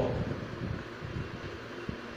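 Steady low room noise, with a few faint taps of chalk writing on a blackboard.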